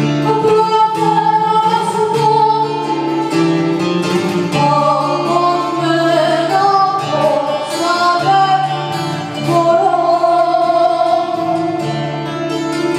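A woman sings a Greek song live into a microphone, accompanied by acoustic guitar and keyboard, which holds steady low notes under the melody.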